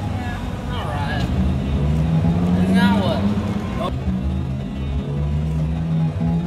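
Busy city sidewalk ambience: snatches of passers-by talking, with music and traffic running underneath as steady low notes.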